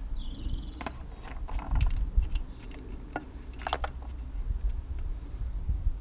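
A handheld Homelite chainsaw being handled: scattered clicks and knocks from its plastic housing and parts as it is turned over by hand, over a steady low rumble. A brief high tone sounds just after the start.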